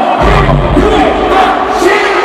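Large concert crowd shouting along, many voices at once, over a hip-hop track. The track's deep bass comes in just after the start and drops out shortly before the end.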